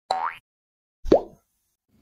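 Two short cartoon pop sound effects about a second apart, each a quick upward-gliding 'bloop'.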